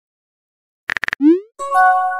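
Messaging-app sound effects: silence for almost a second, then a few quick typing clicks, a short rising 'bloop' pop and a held chime of several notes as a new chat message appears.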